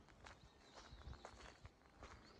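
Very faint footsteps on fine gravel, a few soft scattered crunches, at near-silence level.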